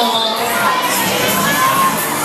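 Many riders on a Disco Jump fairground ride shouting and screaming together, with overlapping high voices rising and falling throughout.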